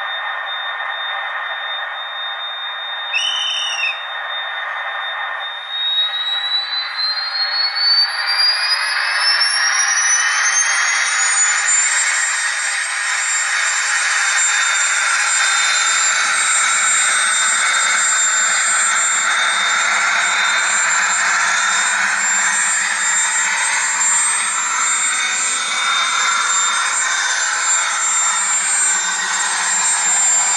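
Sound system of a model RTG gas-turbine trainset reproducing the turbine: a high whine that rises steadily in pitch as the turbine spools up for departure, then holds steady while the set runs, with lower running noise building as it passes. A short horn toot sounds about three seconds in.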